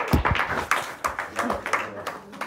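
Small audience clapping after a song, a handful of scattered, uneven claps. A low thump near the start.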